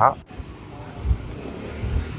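Street background noise with road traffic, with a few low thuds on the microphone about a second in and near the end.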